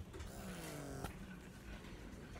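A faint, distant voice in the store background, twice sliding slowly down in pitch over low room noise.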